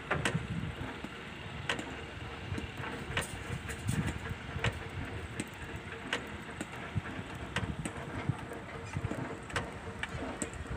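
Construction-site background: a steady engine hum, with sharp knocks and clanks every second or two and low wind rumble on the microphone.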